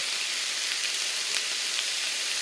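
Chopped onion and red and orange bell peppers sautéing in a little olive oil in a Teflon pan, giving a steady sizzle with a few faint crackles.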